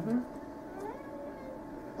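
Faint, brief vocal sounds that glide in pitch, with the tail of a man's word trailing off at the very start.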